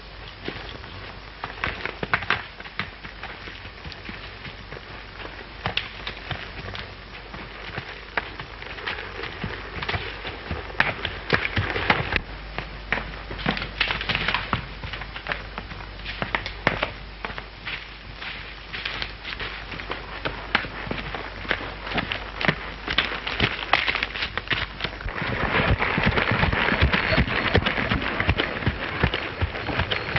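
Horse's hooves crunching and clattering through dry leaves, brush and twigs, with many sharp crackles and knocks. In the last few seconds the hoofbeats come faster and louder as the horse breaks into a gallop. A steady low hum from the old film soundtrack runs underneath until then.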